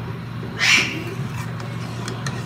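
Chicken and green capsicum sizzling and being stirred with a spatula in a pan on a high gas flame, over a steady low hum. A brief, louder, higher-pitched sound stands out a little over half a second in.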